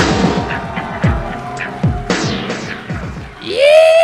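Live band playing loud intro music, with low notes that slide downward about once a second, under a cheering, clapping audience. A loud, drawn-out yell starts near the end.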